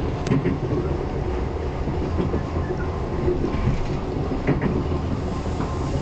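Irish Rail passenger train running at speed on the line, a steady loud rumble with a few sharp clicks from the wheels.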